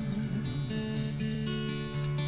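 Acoustic guitars ringing on a held chord, with a few single notes picked about halfway through, under a soft hummed 'mm' from a singer.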